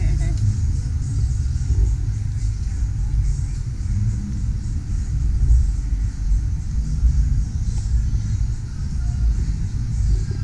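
Steady low rumble of outdoor street ambience, with indistinct voices in the background.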